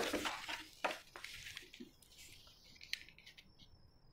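A few faint, light ticks and a soft rustle over a quiet room, from a paper blouse pattern being handled and laid on cloth.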